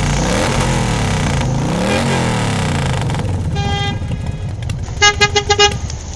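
Horn honks over a steady rumbling, traffic-like noise: one short honk about three and a half seconds in, then a quick string of short honks about five seconds in.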